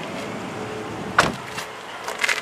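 A car door shutting: one sharp thump a little over a second in.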